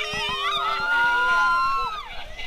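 Several amusement-ride riders screaming together, long held screams that rise in pitch at the start and break off together at the end.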